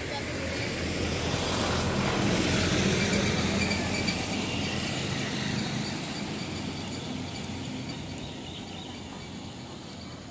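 A motor vehicle passing on the road, its engine and tyre noise swelling over the first three seconds and then slowly fading away.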